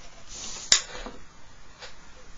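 Pencil lead scraping along paper against a plastic set square, then a single sharp click about two-thirds of a second in as a drawing tool is set down on the drawing board.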